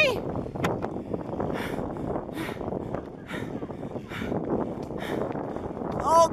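Wind rushing over the microphone of a camera carried on a moving bicycle, with steady noise from the ride. Short hissing bursts come about once a second.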